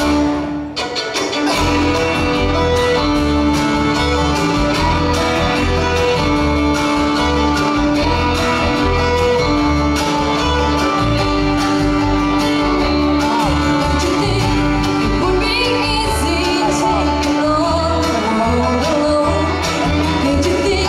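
Live bluegrass band playing an instrumental break: fiddles carrying long held notes over banjo, mandolin and guitar picking and an upright bass pulse. The sound dips briefly about half a second in.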